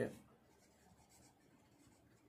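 A pen faintly scratching on paper as words are written by hand.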